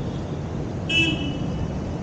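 A vehicle horn sounds one short honk about a second in, over steady road traffic noise.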